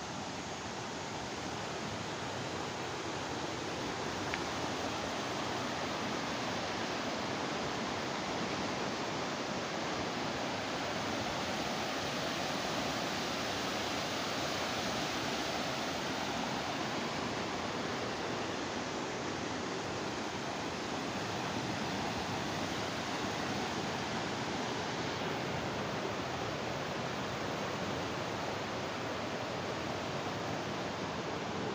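A fast mountain river rushing over boulders in white-water rapids: a steady, dense rush of water that grows a little louder over the first few seconds.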